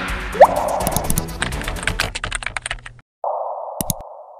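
Outro music with sound effects: a quick rising swish about half a second in, then a run of rapid, typing-like clicks that fades and cuts off about three seconds in. A steady hissing tone follows, with a couple of clicks near the end.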